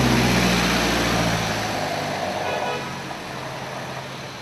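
Street traffic with a vehicle engine passing close by, loudest at first and fading after about a second and a half to a lower steady traffic noise.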